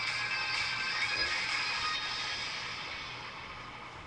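Skateboard wheel spinning freely on Bones Reds bearings, a steady whirring hiss that slowly fades as the wheel winds down.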